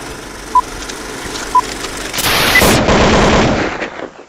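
Short, single-pitched beeps about a second apart over a low hiss. Then, a bit over two seconds in, a loud burst of rapid automatic gunfire that lasts under two seconds and stops sharply.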